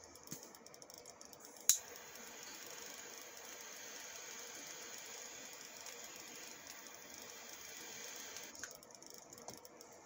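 Butane torch lighter clicked to ignite a little under two seconds in, then its jet flame hissing steadily for about seven seconds as it lights a cigar, cutting off shortly before the end.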